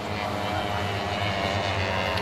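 Citroen 2CV racing cars passing at speed, their small air-cooled flat-twin engines buzzing steadily and growing a little louder.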